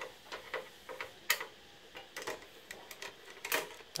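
A screwdriver working the cover screws of a Pioneer SA-8800II amplifier's metal case: a string of light, irregular clicks and ticks, a few a second.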